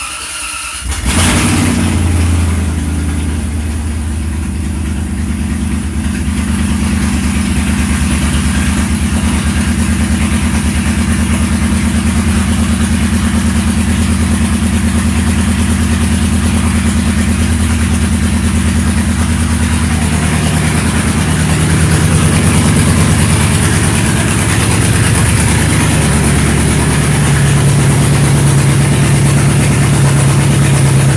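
2005 Range Rover engine cranking for about a second, catching, then idling steadily, its note shifting about two-thirds of the way through. The engine is running just after a new crankcase ventilation oil separator was fitted to cure oil burning that showed as whitish-blue exhaust smoke.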